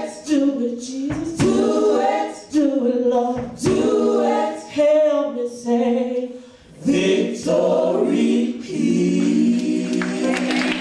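Gospel vocal group singing in harmony, with a sharp beat about once a second. From about seven seconds in they hold one long closing chord as the song ends.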